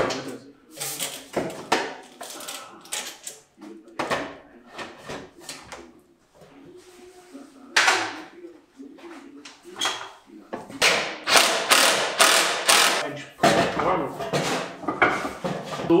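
Metal dust-extraction pipe being handled and pushed into its fittings overhead: irregular knocks and clatter of sheet-metal duct parts, with a run of quick scraping strokes about two thirds of the way through.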